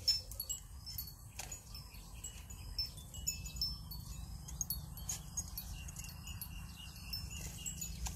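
Scattered light, high tinkling notes, chime-like, over a low steady rumble.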